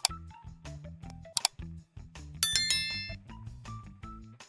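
Background music with a steady beat, overlaid with like-and-subscribe animation sound effects: short clicks at the start and about a second and a half in, then a bright bell ding, the loudest sound, ringing out for about half a second.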